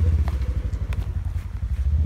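Low rumble of wind buffeting a phone's microphone, with a few light knocks from the phone being handled and moved.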